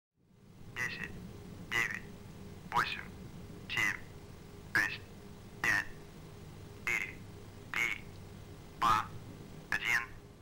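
A launch-control voice over a loudspeaker calling out the final countdown to ignition, one short call about every second, ten in all, over a steady low hum.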